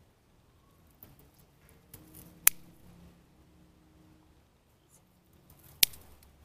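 Scissors snipping through the fleshy stems of an elephant's bush (Portulacaria afra): two sharp cuts, one about two and a half seconds in and one near the end, with a few softer clicks between.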